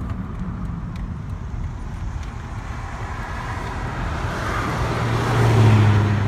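Road noise of a moving car heard from inside it: a steady rush of tyres and wind that swells toward the end, with a deep hum coming up over the last couple of seconds.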